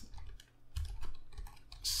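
Typing on a computer keyboard: a few separate keystrokes.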